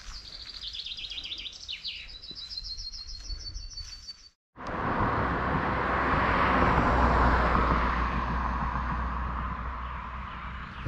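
A songbird singing rapid series of high, evenly repeated notes. About four and a half seconds in the sound cuts off, and a louder steady rush of wind noise with a low rumble takes over.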